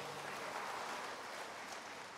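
Audience applauding in a hall after the song has ended, fading out near the end.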